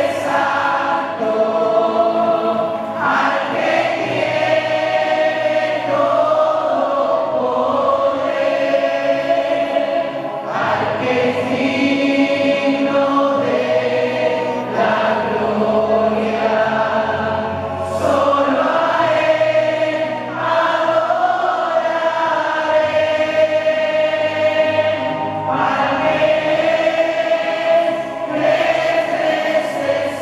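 A choir singing a hymn in long, held notes, phrase after phrase.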